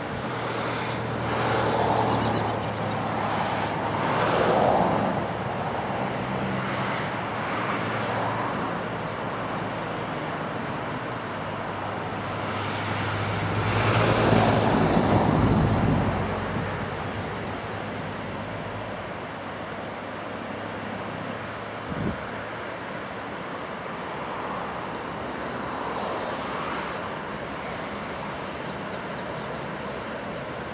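Distant Canadian Pacific diesel freight locomotives rumbling at low throttle as the train inches across a steel bridge, a steady low hum that is strongest at the start and again about halfway through. Broad outdoor noise swells and fades several times over it, and a single short knock comes about two-thirds of the way in.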